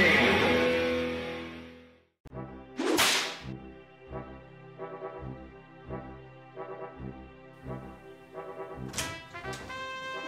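A held musical chord fades out, then a single whip crack about three seconds in, followed by brass march music with a steady beat, like an adventure-film theme.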